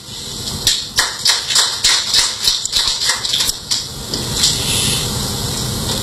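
Irregular sharp clicks and knocks over a steady high hiss, with no speech. The clicks thin out after about four seconds, leaving the hiss.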